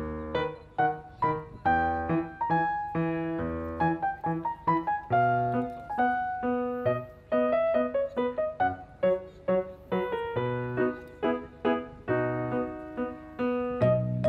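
Background piano music: a gentle melody of struck notes, several a second, over slower bass notes.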